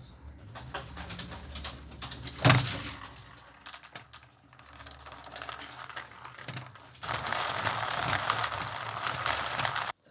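Steel marbles clicking and rattling into the empty pipes of the Marble Machine X as they are refilled, with one sharp knock about two and a half seconds in. From about seven seconds in, the marbles run together in a dense, continuous clatter.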